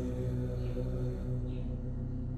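Background music: a steady, low meditative drone of sustained tones running under the pause in speech.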